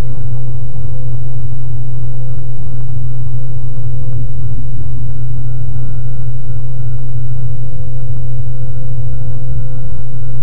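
Washing machine running with a loud, steady, unbroken hum of its motor and turning drum, low-pitched with a faint steady whine above it.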